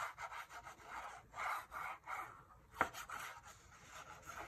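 Tip of a green-capped liquid glue bottle rubbing and scraping across designer series paper as glue is drawn on, a string of soft swishes, with one sharp tap a little under three seconds in.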